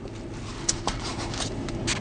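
Sipping through a straw and handling a styrofoam drink cup as it is set into a car cupholder: a few short clicks and creaks over a steady low hum.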